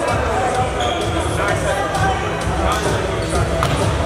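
Basketball game sound in a gymnasium: voices of players and spectators talking, with a basketball bouncing on the hardwood floor.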